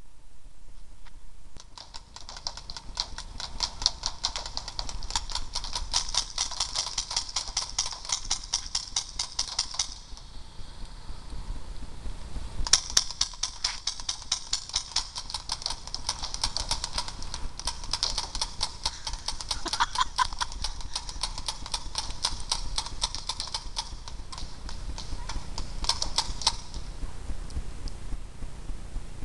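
Paintball markers firing in rapid strings of sharp pops, several shots a second. The firing breaks off briefly about ten seconds in, resumes, and thins out near the end.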